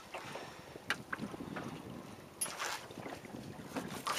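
Wind on the microphone in a small open boat, with a few light knocks about a second in and a brief rustle a little past halfway as a caught smooth-hound shark is handled.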